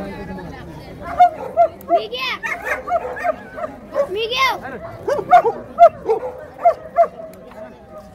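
A dog barking in a rapid series, about two to three barks a second, beginning about a second in and stopping shortly before the end, over background voices.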